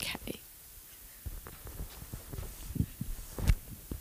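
A pause picked up by a handheld microphone: a short breath right at the start, then scattered soft thumps and clicks of handling and movement, with faint whispering.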